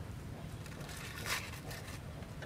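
Aluminium foil crinkling as it is peeled off the top of a small steel tumbler, with small crackles throughout and a louder crackling rustle about halfway through.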